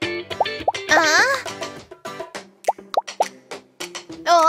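Light background music for a children's cartoon with cartoon sound effects: about five short rising 'bloop' plops, and a brief wavering cartoon vocal sound about a second in.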